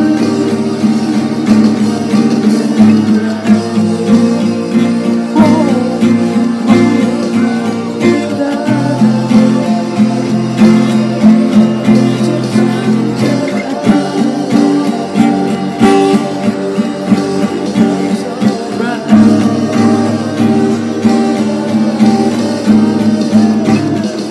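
Acoustic guitar playing chords in a steady rhythm, the chords changing every few seconds.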